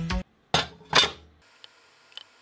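Background music stops just after the start, followed by two sharp, bright hits about half a second apart that die away quickly, then a faint hiss.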